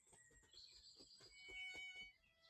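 Faint, quick, light tapping of fingertips on the head in a self-massage, several taps a second. Faint thin high tones sound near the end.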